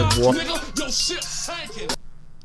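Hip hop track: a rapped line ends over a bass-heavy beat with sharp percussion hits, and the music then cuts off.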